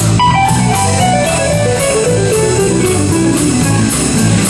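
Live rock trio of electric guitar, electric bass and drum kit playing an instrumental passage. The guitar plays a run of notes stepping steadily down in pitch over about three and a half seconds, over a repeating bass line and a steady cymbal beat.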